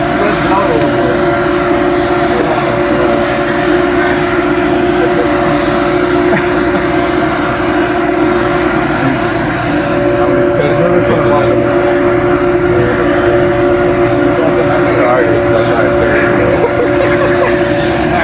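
Steady machinery hum holding two low tones under a wash of noise, with faint voices in the background.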